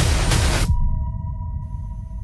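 News-promo sound design: a dense crackle of gunfire-like hits and booms over music that cuts off abruptly less than a second in. A held electronic tone lingers over a low rumble that fades.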